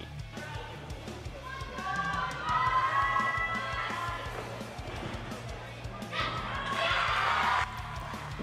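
Background music with a steady bass line runs throughout. Above it, high voices call out in the gym, and near the end a burst of cheering and screaming lasts about a second and a half as the gymnast lands her vault.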